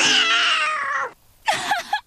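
Animated black panther cub's cartoon roar: one long, loud yowl that rises sharply and then slowly falls over about a second. A brief, shorter cry follows near the end.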